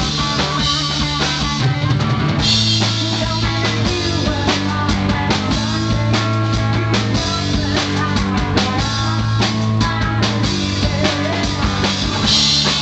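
Rock band playing live on an amplified stage: the drum kit leads, with electric guitar and keyboard, the whole mix loud and dense.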